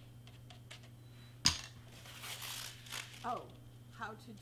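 A sharp knock as a plastic glue bottle is set down on a cutting mat, followed by the rustle and crinkle of crepe paper strips being handled. A steady low hum runs underneath.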